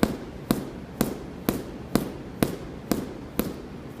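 A 20-pound medicine ball slammed repeatedly into a gym floor, a sharp smack about twice a second, eight times in a steady rhythm.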